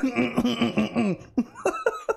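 A man laughing hard in a run of quick bursts through the first second, then a few shorter laughs.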